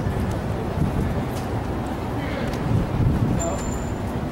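Outdoor background of indistinct voices over a steady low rumble of city traffic; a thin, steady high-pitched whine starts near the end.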